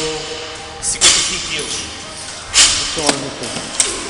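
Four short, sharp knocks and thuds of gym equipment being handled: one about a second in, then three closer together in the second half.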